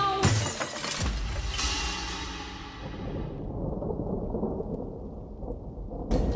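A sudden crash just after the start, then a long low rumble. The rumble's upper hiss dies away over about three seconds and the deep part carries on.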